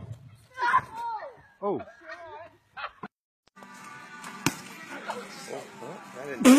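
Onlookers crying out "Oh!" as a rider crashes onto a cardboard jump ramp. After a brief gap comes a steady outdoor noise bed with one sharp knock about four and a half seconds in.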